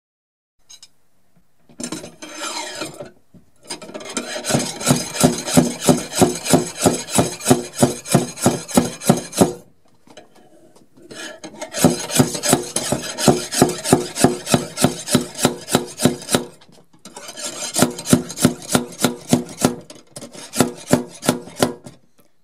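Rapid rhythmic rasping strokes, about three to four a second: a short burst, then three long runs broken by brief pauses.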